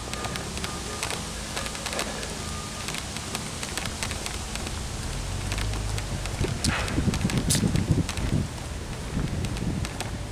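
Wind buffeting an outdoor microphone as it moves, with light crackles and ticks of handling noise. A louder stretch of low gusts comes about two-thirds of the way in.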